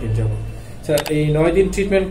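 A man talking in Bengali, with sharp mouse-click sound effects from a subscribe-button animation about a second in and again near the end.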